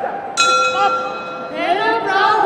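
Boxing ring bell struck once about half a second in, its tone ringing on steadily and marking the end of a round, with voices from the crowd and corners over it.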